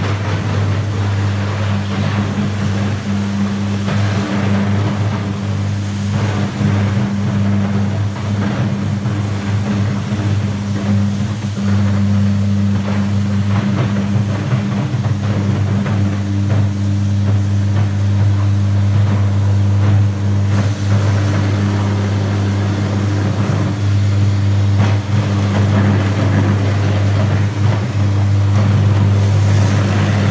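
Electric arc furnace running on graphite electrodes: the arcs give a loud, steady deep hum with a higher overtone, under constant irregular crackling.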